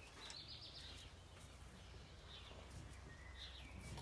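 Near silence with faint bird chirps, one near the start and another near the end, over a low steady background hum.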